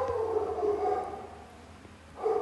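A drawn-out, high-pitched vocal call, held for about a second and a half, slowly falling in pitch and fading away.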